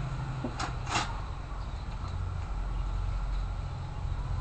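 A metal spoon clinking twice against a ceramic bowl, two quick clinks close together near the start, over a steady low hum.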